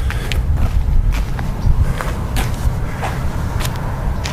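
Radio-controlled electric-wheelchair drive base of a mobile projection cart rolling off over pavement: a steady low rumble with irregular knocks and rattles from the cart's frame and wheels.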